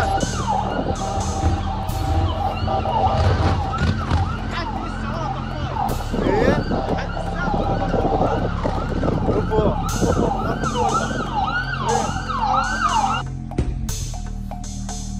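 Several emergency-vehicle sirens sounding at once, overlapping, each sweeping up and down in pitch about once a second; they stop about a second before the end. Background music runs underneath.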